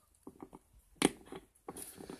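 Light clicks and taps of a small plastic toy figurine handled and set down on a hard countertop, the sharpest click about a second in.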